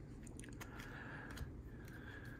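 Faint rustling and a few small clicks of glossy trading cards being slid through a stack in the hands.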